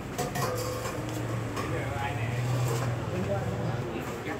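People talking in the background, with a few light clicks, over a steady low hum.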